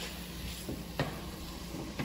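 Faint, steady sizzle of a frying pan on high heat, with a couple of light knocks about a second in.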